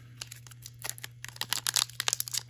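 Foil wrapper of an Upper Deck Artifacts hockey card pack crinkling and crackling in the hands as it is worked open, in quick irregular crackles.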